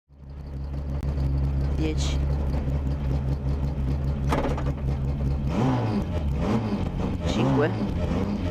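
Renault Clio S1600 rally car's four-cylinder engine heard from inside the cabin, idling steadily, then revved up and down repeatedly from about five and a half seconds in while the car waits at the stage start.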